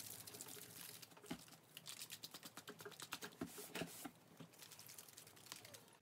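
Small plastic mixing jar of Angelus flat white paint and 2-Soft being shaken by hand to mix it, a quiet, fast patter of small clicks and knocks.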